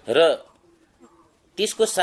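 A man talking in short phrases of Nepali, with a faint low bird call in the pause between them.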